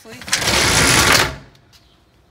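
Fire engine's aluminium roll-up compartment door pulled down shut, a loud rattle lasting just over a second.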